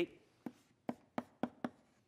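Chalk writing on a blackboard: a series of short, sharp taps and clicks as the chalk strikes and strokes the slate, about five in two seconds at an uneven pace.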